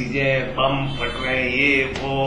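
A man speaking to camera in Hindi: only speech.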